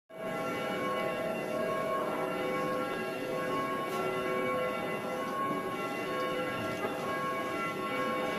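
Church bells ringing, a dense, steady mix of many overlapping tones.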